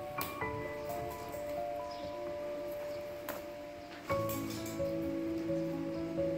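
Instrumental background music of slow, held notes; a fuller, louder chord comes in about four seconds in. Under it there are a few faint clicks and crinkles of a small cardboard box and its tape being handled and peeled.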